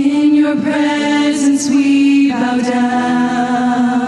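Church choir and lead singers singing a slow line on long held notes, the harmony shifting to a new chord a little past halfway.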